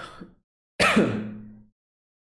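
A man's sharp breathy exhale about a second in, trailing into a short voiced hum; before it, the fading end of a muttered 'um'.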